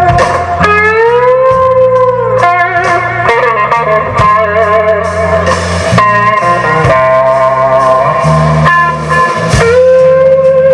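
Live blues band with an electric guitar soloing over bass guitar and drums. The guitar holds long notes, with a slow upward string bend about a second in and wavering vibrato a few seconds in.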